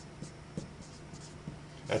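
Dry-erase marker writing on a whiteboard, a few faint short strokes, over a low steady hum.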